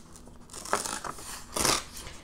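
A sheet of scrapbook paper being torn by hand across its width. The rip goes in two surges, about half a second in and again near the end.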